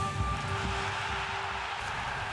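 End of a TV sports broadcast's opening sting: a held synthesized tone fades out in the first second under a swelling whoosh of noise with soft low pulses.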